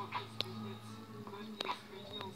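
A soft, whispery voice over quiet background music, with a few light clicks.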